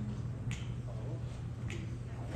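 Two sharp finger snaps a little over a second apart, counting off the tempo for a jazz band, over a steady low hum from the stage.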